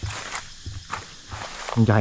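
Footsteps crunching over dry leaf litter and scattered debris: several steps at a walking pace.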